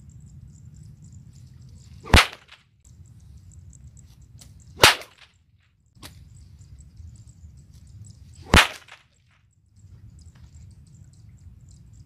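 A homemade whip cracking three times, each crack sharp and loud, about two seconds in, near five seconds and past eight seconds.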